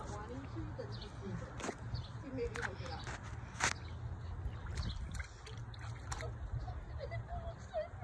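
A baby splashing in a shallow plastic kiddie pool: soft sloshing with a few sharp slaps of the water, the clearest about three and a half seconds in. Faint vocal sounds and a low steady rumble run underneath.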